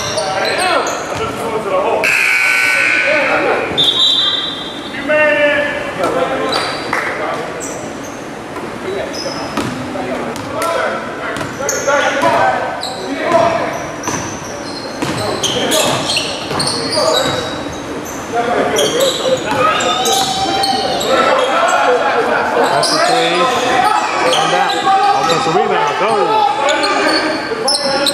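A basketball bouncing and dribbling on a hardwood gym floor during live play, with players' and spectators' voices echoing through the large gym.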